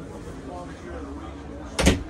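A single short, sharp knock near the end, the loudest sound, over background voices.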